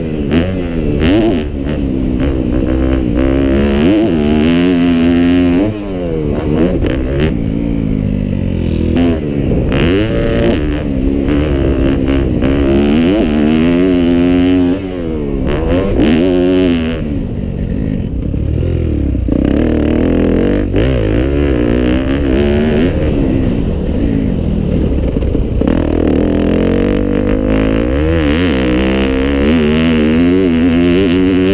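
Yamaha 250F four-stroke single-cylinder dirt bike engine ridden hard, its revs climbing and falling again and again with throttle and gear changes. The throttle shuts off briefly about six seconds in and again about fifteen seconds in.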